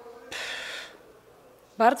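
A woman drawing one audible breath in, lasting about half a second, during a thinking pause; her speech starts again near the end.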